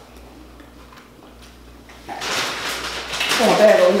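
A few faint clicks of food being handled, then a person's voice: a loud breathy rush about two seconds in that turns into a voiced, falling groan near the end.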